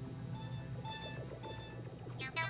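Three short electronic beeps about half a second apart from a wrist-worn gadget as its buttons are pressed, over a steady low hum.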